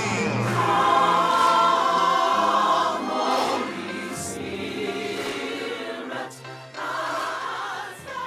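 Background music: a choir singing long held notes over a low, steady bass line.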